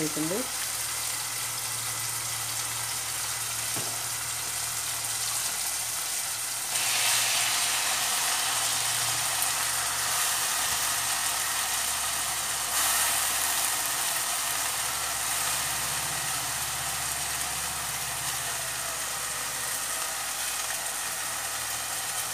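Chopped banana flower frying in hot oil in a steel pot: a steady sizzling hiss that grows louder about seven seconds in and eases back about six seconds later.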